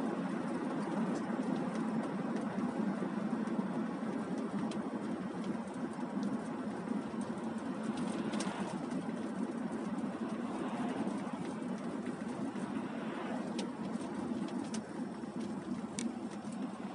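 Steady road and engine rumble of a moving car, heard from inside while driving on a wet, slushy road, with a few faint clicks. An oncoming car swishes past about halfway through.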